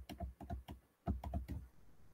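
Computer keyboard keys clicking faintly in a quick, irregular run of about ten keystrokes, with a short pause about a second in.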